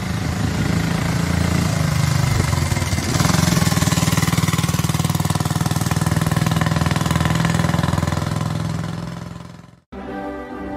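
Motorcycle engine running with a rapid, even beat, getting louder about three seconds in, then fading out near the end.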